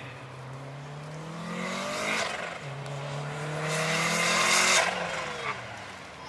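Lancia Delta HF Integrale Evoluzione rally car's turbocharged four-cylinder engine accelerating hard. The note climbs, drops sharply at a gear change about two seconds in, then climbs again to its loudest just before five seconds and falls away as the throttle is lifted.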